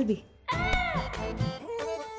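Background comedy music with a short high-pitched squeal that rises and falls about half a second in.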